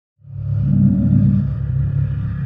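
Deep, steady synthesized rumble of an intro sound bed that fades in quickly just after the start.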